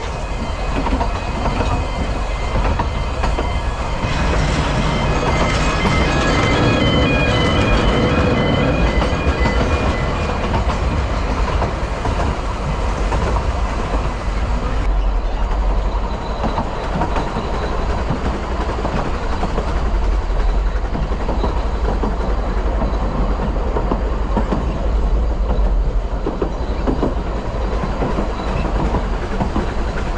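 Narrow-gauge steam train running, heard from an open carriage: a steady, loud rumble of wheels on the track with a strong low drone. Broken high-pitched tones come and go during the first ten seconds.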